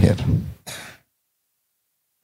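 A man's voice trailing off at the end of a word, then a short breath in, followed by about a second of dead silence.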